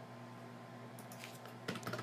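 A few computer keyboard keystrokes, typing a value into a field, about a second in and again near the end, over a faint steady hum.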